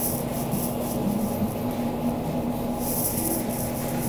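Steady low hum of store machinery over a wash of background noise, with faint scratchy rustling now and then.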